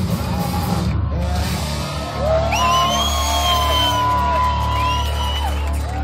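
Live punk rock band playing loud in a small club; the dense playing breaks off about a second in, and from about two seconds in long, drawn-out yells ring out over a steady low hum.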